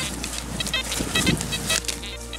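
Metal detector giving a string of short, high beeps as its coil sweeps over grassy ground. The beeps are signals from buried metal all over the spot.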